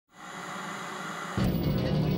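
TV static hiss, then music starts suddenly about a second and a half in.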